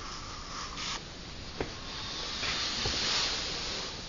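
Rustling handling noise with a sharp click about a second and a half in and a softer knock near three seconds; the rustle swells in the second half.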